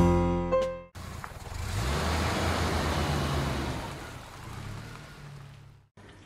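Piano music ends about a second in; then a road vehicle passes, a rushing noise with a low engine hum that swells and fades over about five seconds.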